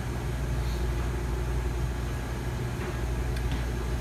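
Small refrigeration compressor of a salad rail cooler running with a steady hum, just topped up with R-134a refrigerant on a unit the technician suspects is low on charge.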